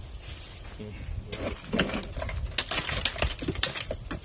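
Ice cubes crunching and clinking as hands scoop and pack them over a hog carcass in a plastic cooler: quiet at first, then a quick, irregular run of sharp clattering from about a second and a half in.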